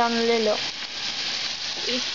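Chicken, onions and mushrooms frying in a pan with a steady sizzle, a wooden spoon stirring through them. A woman's voice speaks over it for the first half second.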